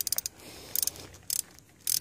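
Light clicks and rattles of small parts being handled at a V6 engine's fuel injectors and their plug connectors. A few clicks come at the start, a quick run just under a second in, and another pair around a second and a half.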